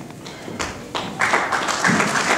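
A few scattered claps, then audience applause starting about a second in and carrying on steadily.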